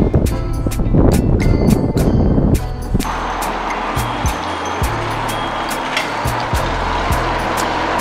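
Hip-hop background music with a heavy, steady beat. About three seconds in, the beat thins and a steady rushing noise rises beneath it.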